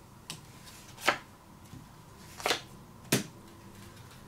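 Playing cards dealt one at a time onto a cloth-covered table: four short, light slaps at uneven intervals as the cards are flicked off the deck and land face down.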